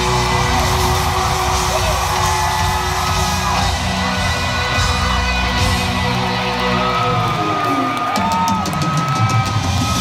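Live country-rock band with drum kit playing loud through a concert PA, heard from the crowd. About seven seconds in, a pitch slides steadily down under a quick run of drum and cymbal hits, with yells from the crowd.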